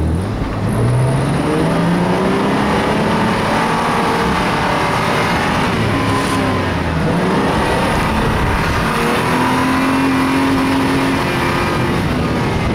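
Vehicle engine revving hard while driving fast over sand. Its pitch climbs, drops back and climbs again, as with gear changes, over a steady rush of tyre and wind noise.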